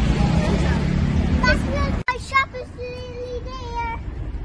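Road traffic and wind noise for about two seconds; then, after an abrupt cut, a child sings a few long held notes over quieter outdoor background.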